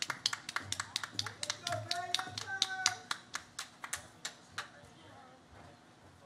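A few people clapping: sharp, separate hand claps, several a second, dying away after about four and a half seconds.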